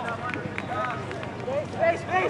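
Indistinct shouting and calling from several voices across an outdoor soccer field, the calls rising and falling in pitch and loudest near the end, with a few sharp knocks among them.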